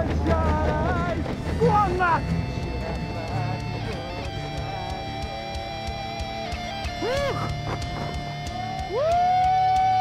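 A man singing a rock song over guitar. He ends on a long held note that slides up into place about a second before the end and then falls away.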